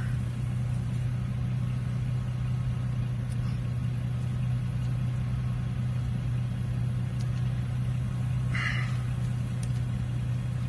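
A steady low motor hum, like an engine idling, holding one pitch throughout, with a brief higher-pitched sound near the end.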